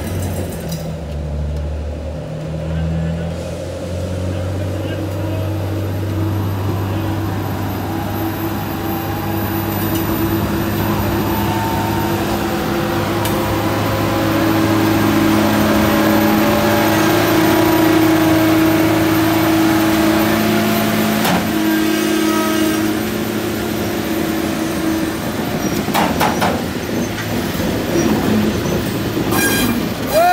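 Covered hopper cars rolling slowly past on the rails, pushed by a trackmobile whose diesel engine runs with a steady low drone. The rolling noise grows louder about halfway through, and a few sharp metallic clanks come near the end.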